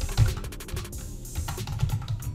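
Computer keyboard typing, a quick run of key clicks, over background music.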